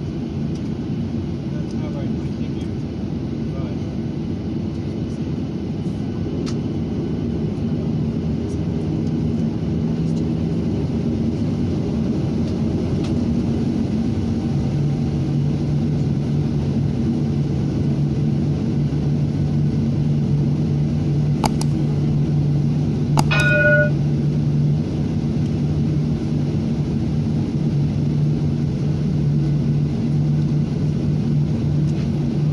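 Cabin noise of a Boeing 737-800 taxiing, heard from a window seat by the wing: a steady rumble from the CFM56 jet engines, with a steady low hum that grows stronger about halfway through. A couple of brief clicks sound about two-thirds of the way in.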